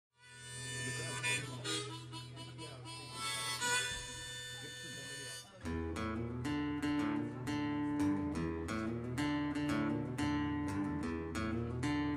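Harmonica in a neck rack plays an opening melody over a steady low hum, fading in from silence. About halfway through, strummed acoustic guitar comes in with a steady rhythm of chords.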